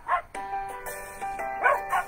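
A dog barking twice in short sharp yaps, once at the start and once, loudest, near the end, over an intro tune that begins about a third of a second in.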